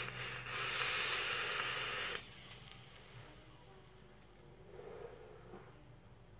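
Long hissing draw on a vape's dripping atomizer: air rushing through it over the heated coil, cutting off abruptly about two seconds in. A fainter breathy exhale of vapour follows near the end.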